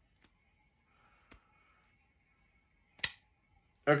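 Small frame-lock folding knife flicked open, its blade snapping out and locking with one sharp click about three seconds in, after a couple of faint ticks.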